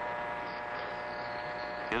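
A steady electrical hum made of several constant tones, unchanging throughout.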